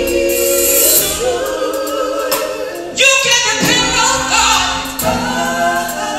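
Female gospel vocal group singing in harmony with a live band, bass guitar and drums underneath the voices.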